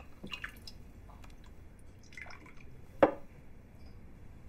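Liquor poured from a bottle and drunk from small cups: faint liquid splashes and gulps with small clicks, then one sharp knock about three seconds in.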